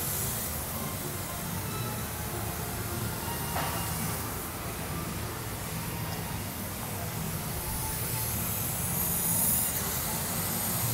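Oxy-fuel heating torch running with a steady hiss against a steel pump shaft, heating the high spot of a bend to straighten it. The hiss grows louder near the end.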